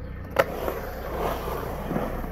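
Skateboard dropping into a concrete bowl: one sharp clack of the board hitting the concrete about half a second in, then wheels rolling on the concrete.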